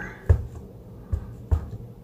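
Clear acrylic stamp block tapped onto a freshly re-inked stamp pad to ink the stamp: three soft thumps, about a third of a second, a second, and a second and a half in.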